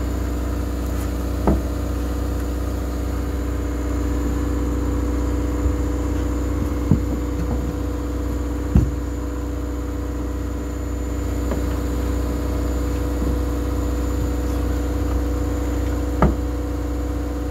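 A steady engine drone, with a few sharp clicks and knocks as steel wire rope strands are worked with a steel marlinspike during a splice.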